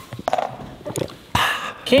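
A die rolled onto a board-game board, clattering in a few short knocks over the first second or so, with brief bits of voices.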